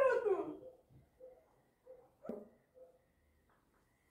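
Indian mixed-breed dog whining, a loud call that slides down in pitch at the start, then a single short yip a little over two seconds in.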